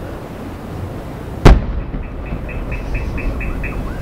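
A single loud boom of an aerial firework shell bursting, about one and a half seconds in, with a low rumble trailing after it. A faint, evenly spaced ticking follows for about two seconds.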